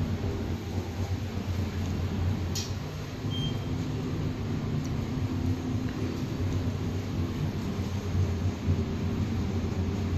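Glass-walled elevator car running steadily up its shaft, giving a continuous low rumble and hum, with a faint click about two and a half seconds in.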